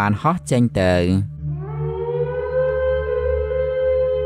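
A voice speaking briefly, then about a second and a half in a long electronic tone slides up slightly and holds steady: an eerie synthesized drone used as a spooky sound effect.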